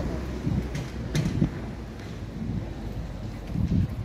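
Wind rumbling on the microphone, with faint street background and a few soft knocks.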